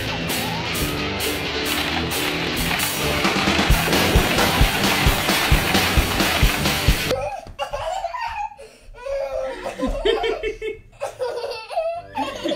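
Rock music with guitar and a steady beat, which cuts off suddenly about seven seconds in; after that, laughter and voices in a small room, with short pauses.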